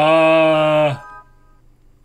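A man's drawn-out vocal 'ohh', held at one steady pitch for about a second and then breaking off, with faint music underneath.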